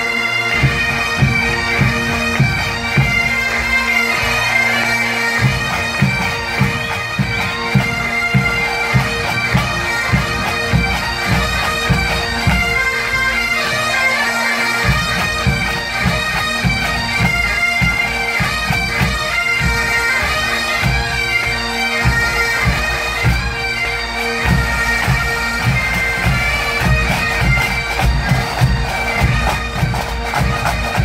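Massed Highland bagpipes playing a tune over their steady drones, with pipe-band drums beating a regular march rhythm beneath. The drum beat drops out twice for a second or two.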